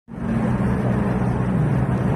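A car's engine and tyre noise heard from inside the cabin while driving, a steady low drone.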